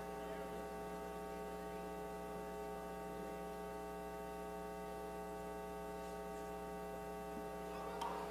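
Steady electrical mains hum: a constant buzz made of many fixed tones, with nothing else over it.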